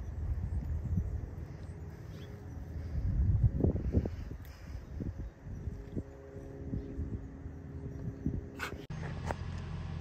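A dog nosing through garden plants and eating grass: short rustling and chewing noises, busiest about three to four seconds in, over a low steady rumble.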